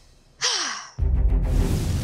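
A woman's breathy sigh, falling in pitch, about half a second in. At about one second dramatic background music cuts in with a deep low hit and plays on.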